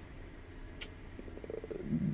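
A quiet pause in speech with one short click just under a second in, then a faint, low, creaky throat sound near the end as the voice hesitates before speaking again.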